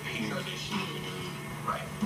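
Television sound playing in the room: talk-show voices over background music, with a steady low hum underneath.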